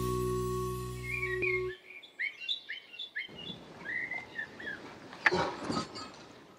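Held chord of intro music ending about a third of the way in, overlapped and followed by birds chirping in a quick series of short calls. A sharp knock comes near the end.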